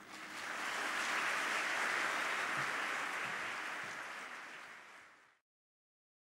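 Audience applauding: the applause swells in quickly, holds steady for a few seconds, then fades and cuts off abruptly about five seconds in.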